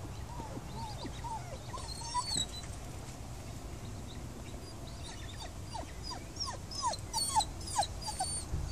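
A dog whining and whimpering: a run of short, high cries, each falling in pitch, coming quicker and louder near the end. It is fretting at being kept out of the water.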